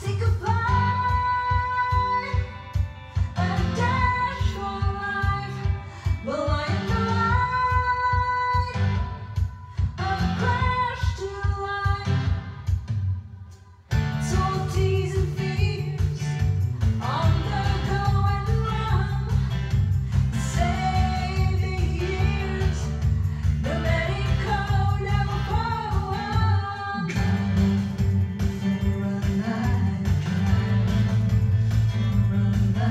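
A woman singing a pop song over a backing track with a steady beat. About 14 seconds in, the music drops away briefly and returns fuller, with a heavier bass.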